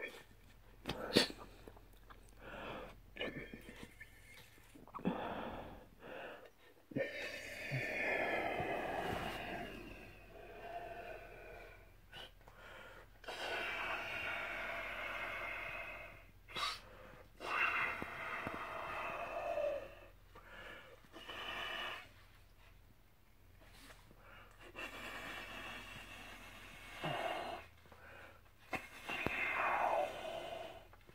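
A soft silicone hippo-shaped balloon being blown up by mouth through its tail: a series of long, noisy blows of air, some with a wavering squeak, broken by short pauses for breath.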